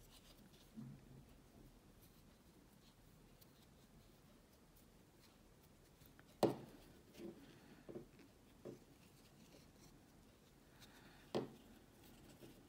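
Faint handling sounds of crocheting by hand: a metal crochet hook drawing yarn through stitches. A sharp click comes about halfway, then a few lighter ticks, then another click near the end.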